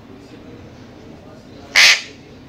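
An Alexandrine parakeet gives one short, loud, harsh squawk near the end.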